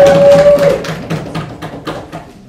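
Audience knocking on desks in applause, a rapid patter of taps that thins out and fades away. A held, pitched cheering voice runs over it and stops just under a second in.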